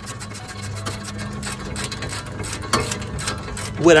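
Ratchet wrench with a 19 mm socket clicking in a fast, even run as a brake caliper bracket bolt is tightened.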